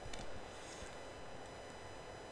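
Faint handling of a tarot card as it is picked up off a cloth-covered table: a light click and a soft slide, over low steady room hiss.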